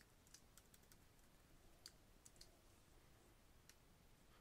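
Faint computer keyboard keystrokes, about half a dozen scattered taps over near silence.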